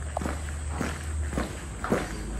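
Footsteps on a hard concrete and tiled surface, about two steps a second, over a low steady rumble.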